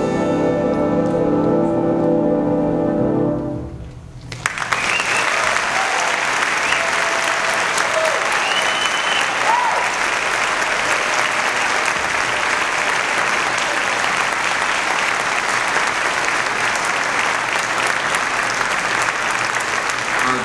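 A jazz big band's final sustained chord, with piano, held for a few seconds and then dying away. Then steady, sustained audience applause.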